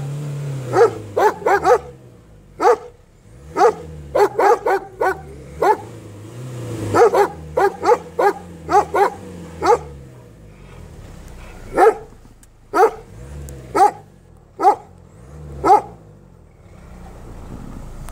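Two guard dogs barking at someone outside their wire fence: quick runs of barks over the first ten seconds, then single barks about a second apart. A low drone rises and falls beneath the barking at times.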